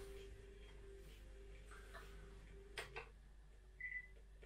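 Near silence broken by two faint clicks of a button pressed on a TENMIYA boombox's control panel about three seconds in, then a short high beep from the boombox near the end as it switches out of FM radio mode.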